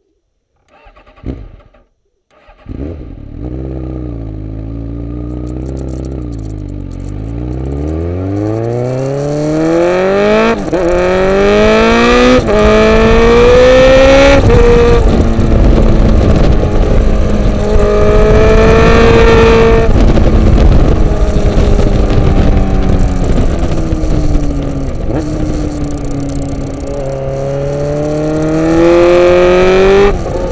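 Suzuki GSX-R inline-four motorcycle engine starting up about two and a half seconds in, its revs settling. It then pulls away and accelerates hard through the gears, the pitch climbing and dropping sharply at each of three quick upshifts. After that the engine note rises and falls with the throttle over rising wind noise on the microphone.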